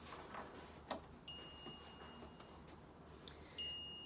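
An LED light therapy device being switched on: a click about a second in, then a faint, steady high-pitched electronic tone that cuts out briefly and comes back near the end.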